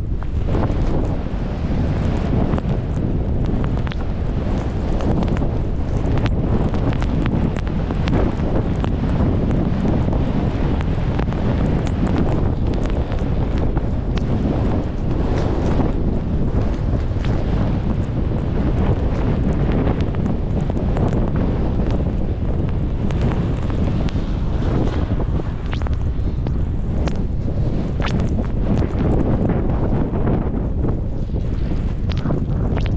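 Wind buffeting the microphone: a steady, loud rumble with constant gusty crackle.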